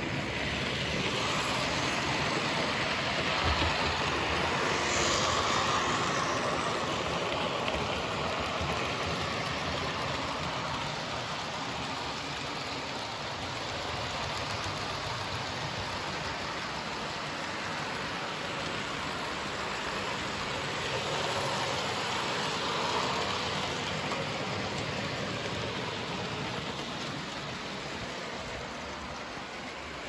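00 gauge model trains running on the layout: a steady whirr of small motors and the rattle of wheels on the track. The sound swells as a train passes close, about five seconds in and again just past twenty seconds.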